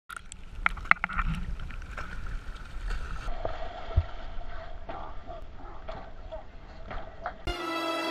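Water sloshing and splashing at the side of a fishing boat, with a low rumble of wind and water on an action camera's microphone and scattered knocks. Music starts near the end.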